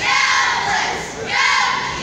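Cheerleading squad shouting a cheer in unison in a large gym: two loud shouted phrases, one at the start and another about a second and a half in.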